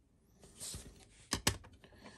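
Hard plastic graded-card slabs being handled: a short soft slide, then two sharp plastic clicks close together about a second and a half in.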